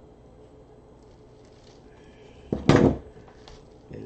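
A short, loud exclamation in a woman's voice about two and a half seconds in, reacting to the pipe cleaner that holds the mesh ruffle snapping; quiet handling of the wire frame and mesh before it.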